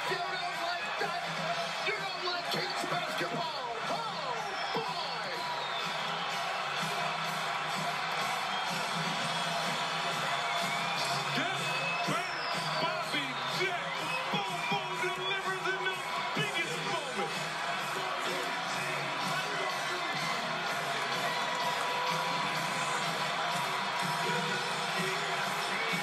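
Basketball arena crowd cheering and whooping over music after a last-second game-winning shot, heard through a television's speaker. The sound stays dense and steady throughout.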